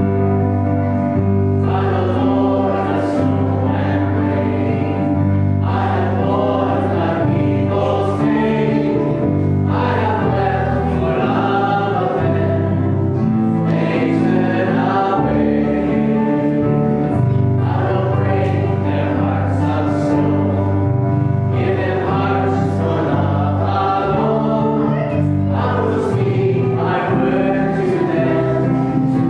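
Congregation singing a hymn together, led by a singer at the microphone and accompanied by a small band with keyboard and guitar, in a steady flow of sung phrases over held low notes.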